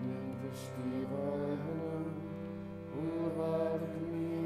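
Devotional chanting of an aarati hymn: voices sing a mantra-like melody over a steady sustained drone. The melody moves to new notes about a second in and again near the end.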